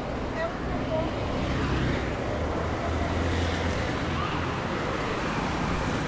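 City street traffic ambience: a steady wash of passing cars, with an engine rumble swelling about two to four seconds in as a vehicle goes by. Faint voices of people nearby.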